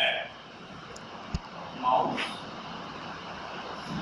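Steady background drone of room noise, with one sharp knock about a second and a half in and a brief murmur of voice near the middle.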